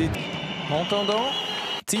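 A man commentating in German over ice-hockey arena background noise, with the sound cutting out for a moment near the end at an edit.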